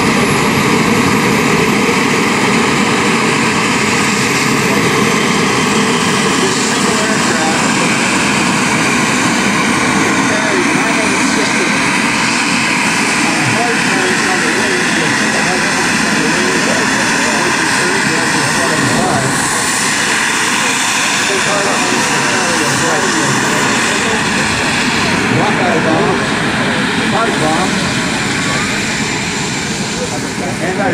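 Small twin turbine jet engines of a radio-controlled A-10 Thunderbolt model running on the ground: a steady loud rush with a high whine that rises in the first few seconds.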